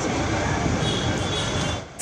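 Steady outdoor background noise with a hubbub of indistinct voices in it. It cuts off abruptly just before the end.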